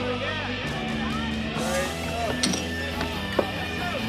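Bar background sound: guitar-led rock music playing under the murmur of crowd chatter, with a single sharp click near the end.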